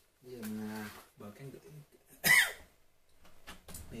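A man coughs once, sharply, about two seconds in, just after a couple of spoken words. A few faint clicks follow near the end.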